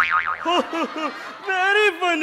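A man's voice in sing-song, mock-Arabic vocalising: a quick wobbling, falling pitch at the start, then short swooping syllables and a held note near the end.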